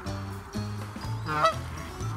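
A Canada goose gives a single loud honk about one and a half seconds in, over background music.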